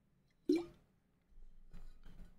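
A man swallowing a mouthful from a water bottle: one short gulp about half a second in.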